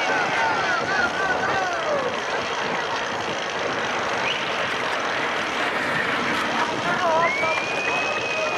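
Steady crowd noise from spectators in a velodrome during a track cycling race, with individual voices shouting over the din. A long, high call is held near the end.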